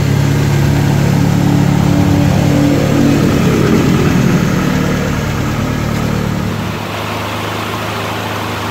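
2000 Mitsubishi Lancer's engine idling with the AC switched on, ready for the refrigerant recharge. The steady idle wavers about halfway through, then settles slightly quieter near the end.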